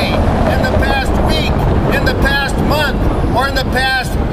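A man speaking over a steady low rumble of city traffic noise, with wind buffeting the microphone.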